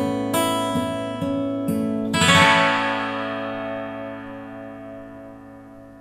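Sigma steel-string dreadnought acoustic guitar: a few picked notes, then a full chord strummed about two seconds in and left to ring, fading away slowly.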